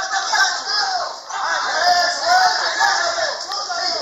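Indistinct voices of people talking and calling out, with music playing faintly in the background.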